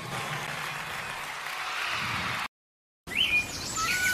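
A steady hiss of live-recording ambience that cuts to a brief silence about two and a half seconds in. Then a flute starts the next song with quick sliding high notes and settles on a held note near the end.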